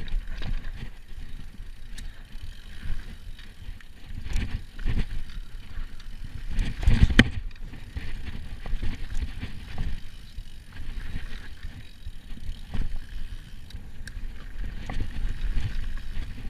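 Giant Trance Advanced full-suspension mountain bike descending a dirt forest trail at speed: tyres rumbling over the ground with a steady run of knocks and rattles from the bike. The loudest clatter comes about seven seconds in.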